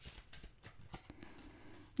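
Faint rustles and light clicks of tarot cards being handled, as a card is drawn from the deck and laid on the table.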